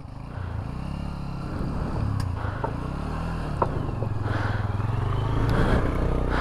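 Motorcycle engine running at low revs, its pitch rising and falling with the throttle over rough rock, growing louder toward the end, with a few sharp clicks of stones.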